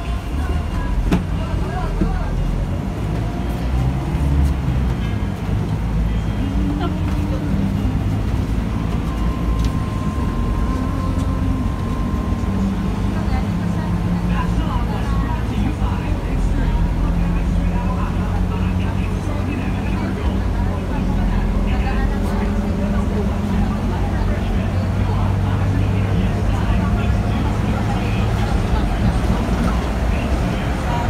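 Scania K310 bus heard from inside the passenger cabin: a steady low engine and road drone that shifts in pitch several times as the bus runs, with voices over it.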